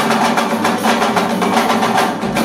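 Live band music with fast, dense percussion, playing loud and without a break.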